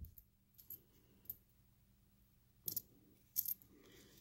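Pennies clinking against each other as they are slid off a stack and sorted by hand on a cloth towel: a handful of brief, faint clinks, spaced out with quiet between them.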